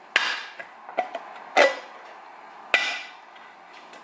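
A kitchen knife being stabbed through a jar lid to punch holes: three sharp strikes, each followed by a short ring, plus a fainter one about a second in.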